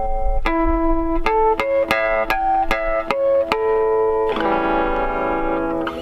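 Electric guitar played in natural harmonics: about ten clear, bell-like single notes plucked one after another, then a chord of harmonics struck about four seconds in and left to ring.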